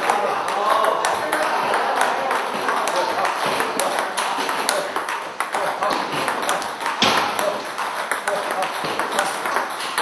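Table tennis ball clicking off paddles and the table in fast rallies, a quick run of sharp ticks that goes on throughout.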